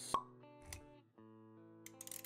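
Intro music with animation sound effects: a sharp pop just after the start, the loudest sound here, then a short low thud, over sustained chord notes.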